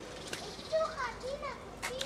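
Children's voices in short calls and chatter, with a single sharp click near the end.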